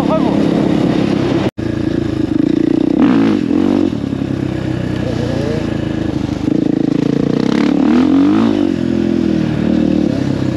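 A KTM enduro motorcycle's engine runs under throttle off-road, its pitch rising and falling as it revs, around three seconds in and again near the end. The sound cuts out for an instant about one and a half seconds in.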